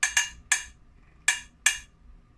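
Wooden spoon striking a small metal saucepan used as a drum, playing a short beat. There are five strokes, each ringing briefly: three quick ones in the first half second, then two more later on.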